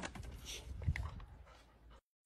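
Faint sounds from golden retrievers, with a short, quiet whimper about a second in.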